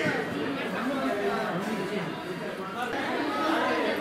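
Several people talking at once: overlapping chatter of voices in a crowded room.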